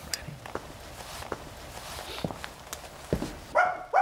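A dog barking twice near the end, over faint scattered clicks and rustling.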